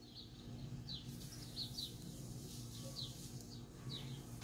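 Faint bird chirping in the background: a string of short, falling chirps, about two or three a second, over a low steady hum.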